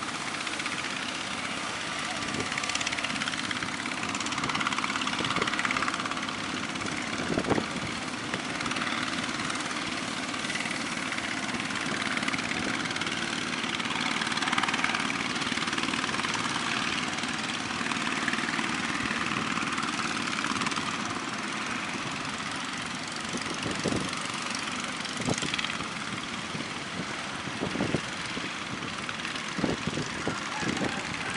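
Waves breaking on the shore, with the steady drone of a wooden fishing boat's engine running as it crosses the surf. A few sharp knocks sound a few times.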